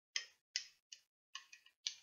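A stirrer clinking against the inside of a drinking glass as a drink mix is stirred into water: about six light, uneven ticks.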